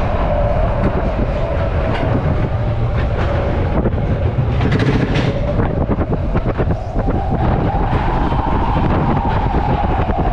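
Matterhorn Bobsleds coaster car running on its tubular steel track: a steady heavy rumble of the wheels, with rapid clicks over the rail joints and a humming tone that climbs in pitch about seven seconds in, then eases back down.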